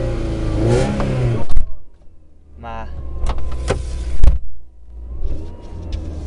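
Car engine running at low revs, heard from inside the cabin; the hum fades out for about a second in the middle and comes back. Two loud sharp knocks, about a second and a half in and about four seconds in, are the loudest sounds.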